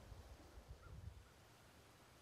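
Near silence: faint outdoor background with a low rumble that fades out about halfway through.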